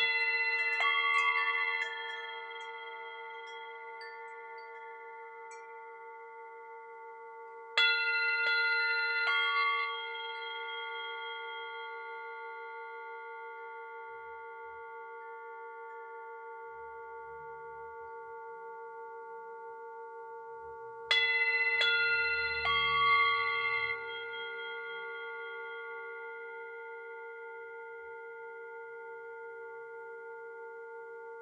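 Metal chimes struck in quick pairs three times, near the start, about 8 seconds in and about 21 seconds in. Each pair rings bright for a couple of seconds and then fades over the steady, lingering ring of singing bowls.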